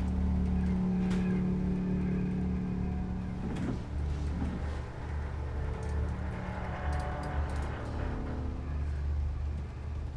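Film sound design of a starship's machinery spaces: a low, pulsing machine drone with a steady humming tone over it that wavers and breaks off about three and a half seconds in.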